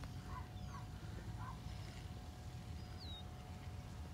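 Faint outdoor ambience over a low rumble, with a bird calling: three soft chirps in the first second and a half, and a short high whistle sliding downward about three seconds in.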